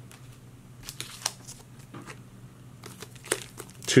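Foil booster pack wrapper crinkling and trading cards being handled, a scattered run of short crackles and clicks that is busiest about a second in and again near the end.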